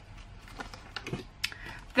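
A few light clicks and taps of small paper craft items being put down and picked up on a tabletop, the sharpest about a second and a half in.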